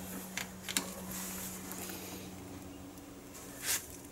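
Steady low electrical hum from a running Sunny Boy grid-tie solar inverter under load, with a couple of faint handling clicks early on and a short rustle near the end.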